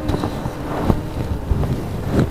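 Rustling and rubbing of a semi-tussar saree's pallu as it is lifted and spread, with a low rumbling and a couple of soft knocks about a second in and again past halfway.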